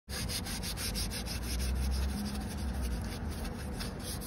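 Paper towel rubbing over an alloy wheel's spokes in quick, even back-and-forth strokes, wiping off plastic dip residue. The strokes fade near the end.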